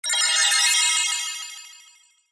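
Edited-in sound effect over a title card: a burst of bright, high ringing tones that starts suddenly and fades away over about two seconds.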